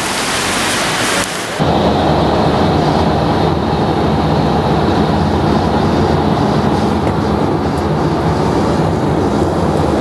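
A loud hiss of wind on the microphone on a rainy street, cut off suddenly about a second and a half in by the steady rumble of a vehicle driving on a wet road, heard from inside the vehicle.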